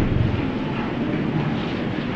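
Steady hiss and rumble of an old recording of a hall, heard in a gap between the preacher's sentences, with no distinct event in it.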